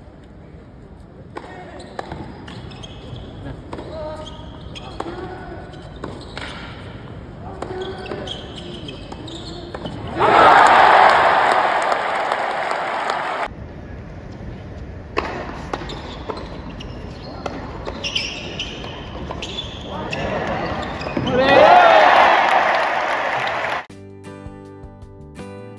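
Tennis ball strikes on racquets and court during a doubles rally in an arena, with crowd voices underneath. The crowd breaks into loud cheering and applause about ten seconds in, and again, loudest of all, near the end.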